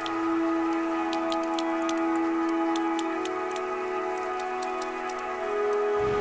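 Sperm whale echolocation clicks, a run of sharp ticks at an uneven pace of a few per second, over soft sustained background music whose held notes shift about three seconds in.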